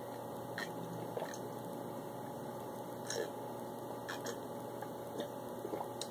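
A man drinking eggnog from a glass: faint swallows and wet mouth sounds, a few small clicks scattered through, over a steady low room hum.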